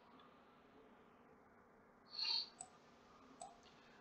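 Near silence broken by a few faint clicks, the loudest a short click about two seconds in, followed by two tiny ticks.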